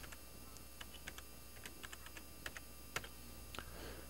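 Computer keyboard keys clicking faintly and irregularly as a word is typed out, with a low steady hum underneath.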